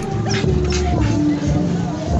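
A dog whining in short high-pitched calls over background music.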